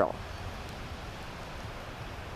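Steady, even hiss of light rain falling outdoors.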